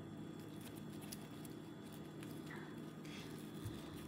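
Faint rustling and small crinkling ticks of a sheer ribbon being handled by fingers as it is shaped into a bow.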